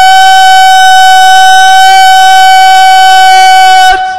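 A man's voice over a loudspeaker system holding one long, loud, steady high note, distorted by the amplification, which breaks off sharply near the end.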